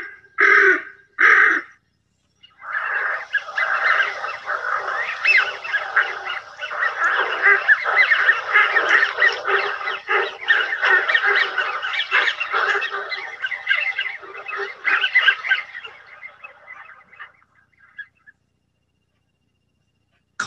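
Two short harsh calls from a female American wigeon flying overhead. Then a flock of American wigeon calls together, squeaky whistles of the males mixed with the harsher calls of the females, in a dense overlapping chorus that fades out near the end.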